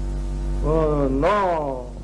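Steady low electrical hum running under the old film's soundtrack, with one drawn-out vocal exclamation from about half a second in to near the end whose pitch dips, rises and falls again.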